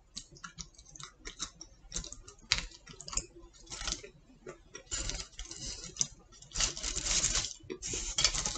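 Close-up eating sounds: irregular sharp mouth clicks from chewing pizza, with a couple of longer rustles in the second half as the pizza is handled on its foil tray.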